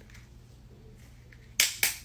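Screw cap of a plastic Prime Hydration sports-drink bottle being twisted open: two sharp cracks close together near the end as the tamper seal breaks.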